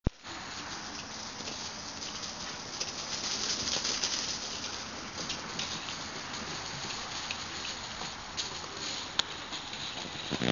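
Outdoor ambience: a steady hiss with many faint, scattered ticks and crackles, opened by one sharp click.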